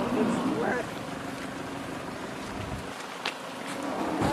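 Steady outdoor background noise with a short voice in the first second and a single click a little after three seconds in.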